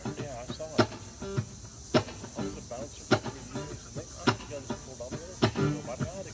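Electric guitar played through an amplifier, picking single notes, some of them bent, over a steady sharp beat that lands about once every second with lighter knocks between.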